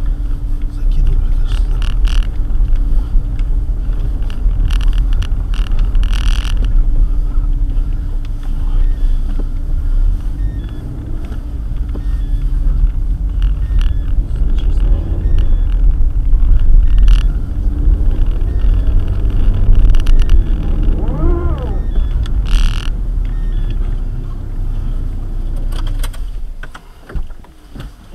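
Low rumble of a car's engine and tyres on packed snow, heard through a dashcam inside the cabin as the car drives slowly, with a few short knocks. Near the end the rumble falls away as the car comes to a stop.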